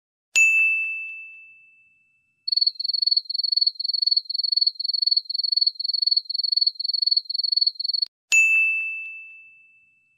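A single bright ding rings out and fades, then crickets chirp in short high trills about twice a second for around five seconds, stopping abruptly before a second identical ding.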